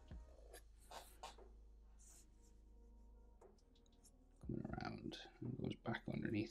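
Black felt-tip marker drawing short, scratchy strokes on paper, quiet. A voice comes in during the last second and a half.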